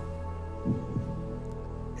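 Game-show tension music playing under a question: a sustained synthesizer chord over a low, heartbeat-like throbbing pulse, with two stronger low beats near the middle.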